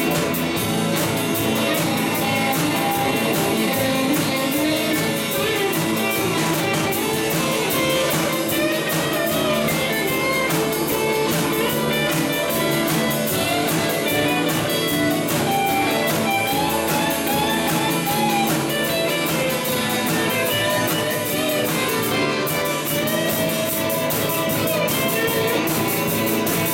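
Live band playing a guitar-led number, with electric and acoustic guitars over a drum kit.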